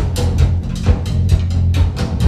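Live big band playing a rock arrangement: the drum kit beats steadily, about four hits a second, over a held bass.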